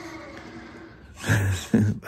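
Redcat Gen 8 scale RC crawler's electric drivetrain giving off a steady whine as it crawls, fading out about a second in; the whine is the model's normal noise, not a fault. A man laughs near the end.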